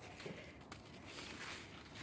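Faint rustling of leaves brushing together as the camera is pushed in among the cucumber vines and tall leafy stems.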